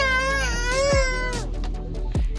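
A young child's drawn-out whining cry: one wavering, high-pitched note lasting about a second and a half, with background music playing.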